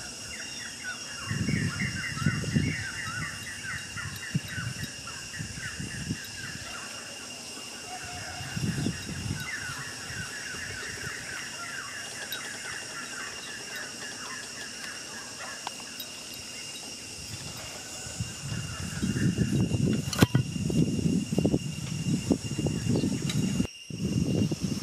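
Rural outdoor ambience: a steady high-pitched insect drone, with a bird's rapid chirping trills in two long runs over the first two-thirds. Low rumbling noise comes in short bursts early on and builds through the last few seconds.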